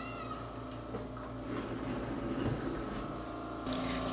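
Steady electrical hum of an LED facial light panel running with its cooling fan.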